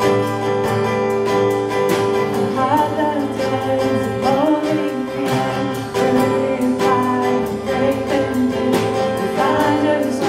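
Live worship music: strummed acoustic guitar over sustained chords, with a woman singing into a microphone in phrases that come in a few seconds in.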